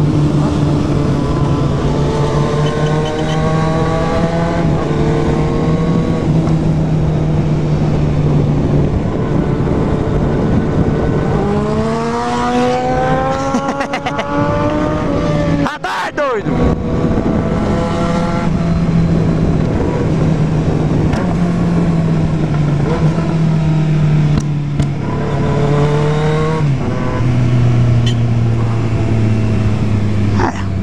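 Motorcycle engine heard from on board at road speed, with wind rushing over the microphone. The engine note holds steady, climbs in rising sweeps as it accelerates about twelve seconds in, drops out briefly near the middle, and falls to a lower pitch near the end.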